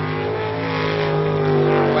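Jet sprint boat engine running at high, steady revs as the boat races through the channel.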